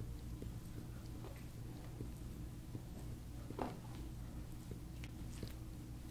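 Handheld massage roller stick rolled across a person's upper back: soft rubbing with scattered small clicks and creaks, and one louder creak just past halfway, over a steady low hum.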